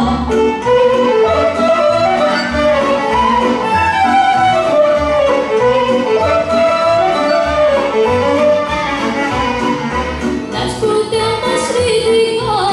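Romanian folk band playing an instrumental passage: a fiddle carrying the melody over a double bass keeping a steady beat.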